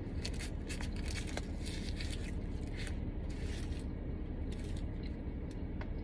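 Close-up chewing of a burger, with short crackly rustles of its paper wrapper, over a steady low hum.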